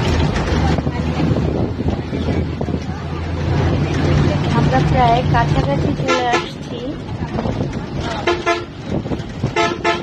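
Bus engine running steadily, heard from inside the passenger cabin. A vehicle horn sounds in short blasts about six seconds in, again a couple of seconds later and once more near the end.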